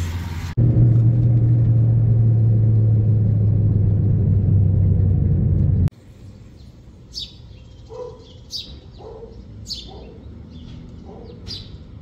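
Loud, steady low rumble of a moving car's engine and road noise heard from inside the cabin, cutting off abruptly about six seconds in. After that the background is quieter, with small birds chirping about once a second.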